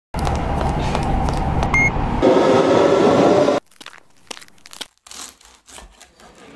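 Loud, steady rumbling noise of a rail station or passing train, with one short high beep near the middle, cutting off suddenly about three and a half seconds in. Then faint scattered crunching and clicking.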